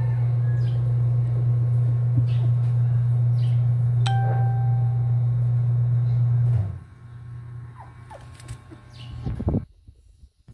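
A loud, steady low hum that cuts off abruptly about two-thirds of the way through, with faint, short, high chirps recurring over it. A brief higher tone sounds near the middle, and a few small soft sounds come just before the end.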